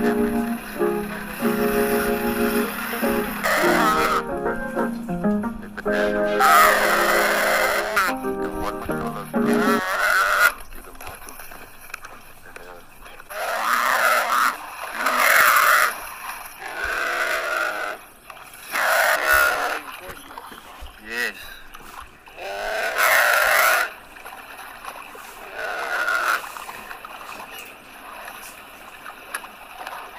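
Guitar background music for the first ten seconds or so. Then a series of loud cries, each a second or so long, from a nyala in distress as African wild dogs attack it in the water.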